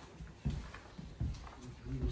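Footsteps on a timber floor: a few dull footfalls with light clicks as a person walks through a room.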